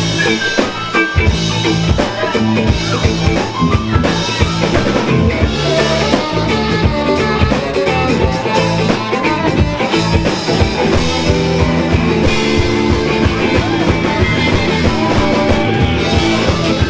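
Live rock band playing a song: a drum kit keeping a steady beat under electric guitar and keyboard.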